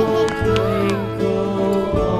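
Background music with held notes, with a few short pitch glides that rise and fall over it in the first second.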